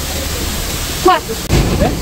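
A steady rushing noise with no clear source, with a brief low thump about one and a half seconds in. A voice says "What?" about a second in.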